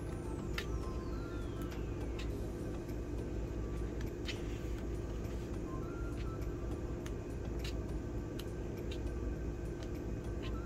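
Steady low hum with scattered soft ticks and rustles as paper sticker-book pages are turned.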